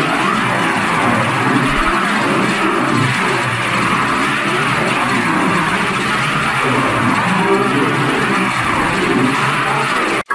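Cartoon soundtrack run through a heavy audio effect, turned into a dense, warbling wash of many pitch-shifted, chorused copies at once, with no clear words.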